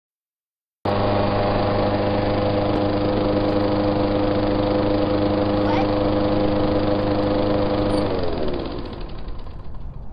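Petrol lawn mower engine running at a steady speed, then switched off about eight seconds in, its pitch falling as it winds down.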